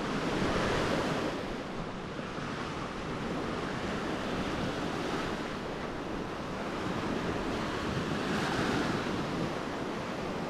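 Small waves breaking and washing up a sandy beach at the water's edge, the rush of surf swelling about a second in and again near the end.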